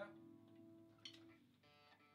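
Near silence: faint electric guitar and amplifier tones ringing and dying away after the drums stop, with a small click about a second in.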